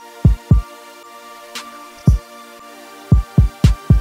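Instrumental trap beat: deep 808 bass hits, two early, one in the middle and a quick run of four near the end, under a sustained synth pad, with two sharp drum hits.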